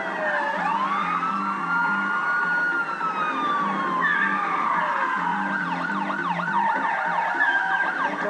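Several overlapping police car sirens: slow wails rising and falling, then a fast yelp a little past halfway, about four cycles a second.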